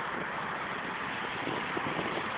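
Steady hiss of road traffic on a city bridge, mixed with wind on the microphone.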